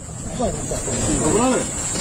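Faint talking from a quieter voice under a low rumbling noise, with a steady high-pitched hiss over it.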